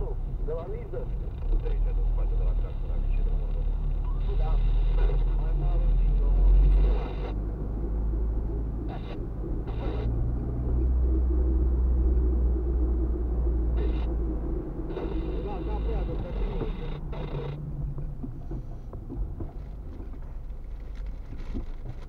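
Low rumble of a car driving in city traffic, heard from inside its cabin, swelling and easing with speed, with voices underneath.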